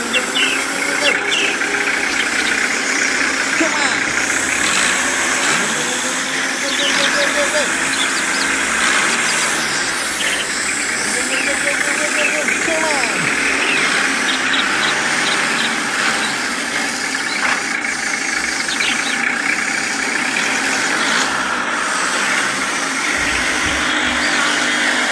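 A motorized miniature model tractor runs steadily as it pulls a loaded trailer through mud.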